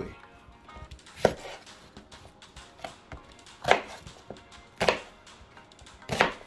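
Chef's knife cutting an onion into rough chunks on a wooden cutting board: three sharp knocks of the blade striking the board at uneven gaps, with a few lighter taps between.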